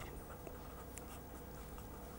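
Faint scratching of a pen writing on paper in a few short strokes, over a faint steady hum.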